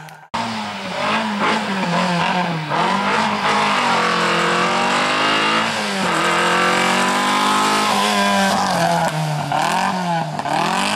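Race-prepared hatchback's engine revving hard through a cone slalom, its pitch climbing and dropping every second or two as the driver accelerates and lifts between the cones. A brief dropout comes just at the start.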